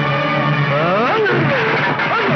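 A held low pitched tone, then loud, sliding cries and shouts in quick succession as men struggle hand to hand, the pitch rising sharply about a second in.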